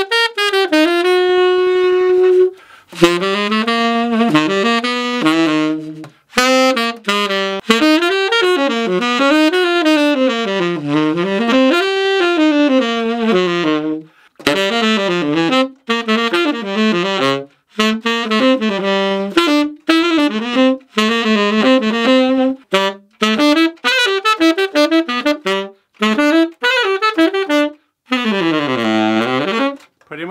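Unaccompanied tenor saxophone with a D'Addario Organic cane reed, playing jazz phrases with short breaths between them: a long held note near the start, and a quick run down to a low note and back up near the end. This is a test of the new reed, which plays exactly the same as a D'Addario Select Jazz reed.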